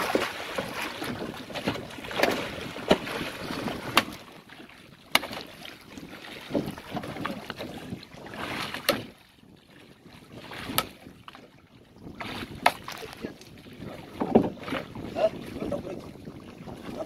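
Water splashing and churning as a large hooked fish thrashes alongside a wooden fishing boat, loudest in the first few seconds and again near the end. Several sharp knocks are spread through it, with wind on the microphone.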